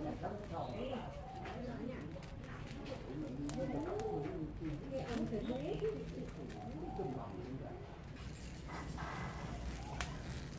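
A dry straw fire crackling with scattered sharp pops as a pig's leg is singed in the flames, over indistinct background voices.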